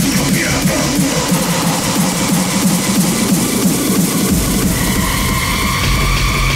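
Hardtekk electronic dance music from a DJ set, in a breakdown with the deep bass kick dropped out. About four seconds in, the bass kick comes back in, joined by a steady held synth tone.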